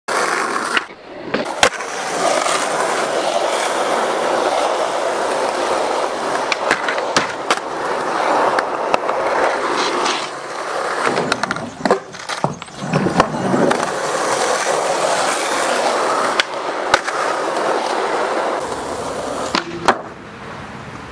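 Skateboard wheels rolling loudly on asphalt and concrete, a continuous rushing noise, broken many times by sharp clacks of the board hitting the ground during tricks.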